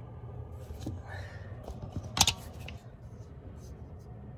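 Rustling and handling noises with a few light ticks and one sharp click about two seconds in, over a low steady hum.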